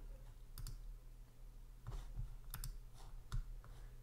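A few faint, separate clicks of a computer mouse, scattered through the pause, two of them close together about two and a half seconds in.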